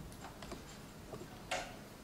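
A pause between passages with no music: faint room noise with scattered small clicks and one sharper click about one and a half seconds in.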